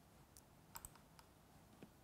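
Near silence with a handful of faint, short clicks from a computer mouse as a presentation slide is advanced.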